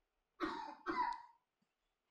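Two short coughs, about half a second apart.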